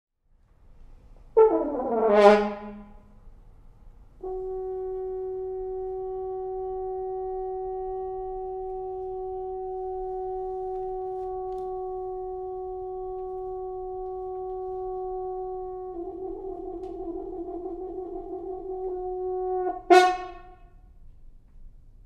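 Solo French horn: a loud attack that slides down in pitch, then one long held note for about twelve seconds that turns rough and wavering near the end, closed by a sudden loud accented note.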